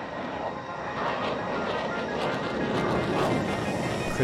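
Fighter jet engine noise, building gradually in loudness and then holding steady, as the jet flies past.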